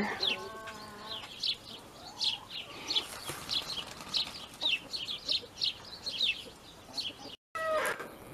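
Free-ranging chickens calling: a steady run of short, high, falling chirps, several a second, with a lower drawn-out call in the first second.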